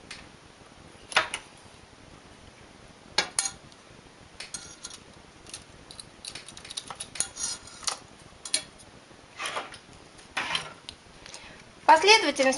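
Irregular light metallic clicks and clinks of a knitting machine's latch needles and a multi-prong transfer tool as stitches are lifted and crossed by hand to form a cable. A few sharper clicks come about one and three seconds in, and they come thicker in the middle.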